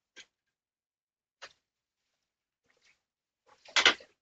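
A few faint, isolated clicks or knocks, then a louder cluster of knocks and clatter near the end.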